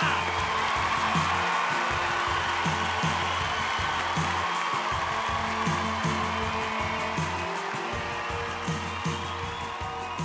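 Theatre audience applauding over background music with a steady beat, the applause slowly dying down toward the end.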